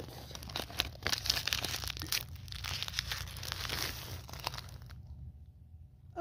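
Plastic wrappers crinkling and crackling as they are handled, stopping about five seconds in.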